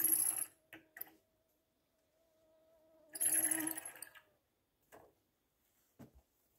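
A rope hauled by hand to hoist a plastic pail up into a tree: two pulls of rope friction, a short one right at the start and a longer one about three seconds in, with a faint steady squeak under them. A few light clicks or knocks fall between and after the pulls.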